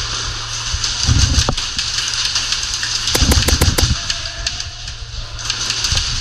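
Airsoft rifle firing a quick string of about six sharp shots about three seconds in, over steady background music with a low hum.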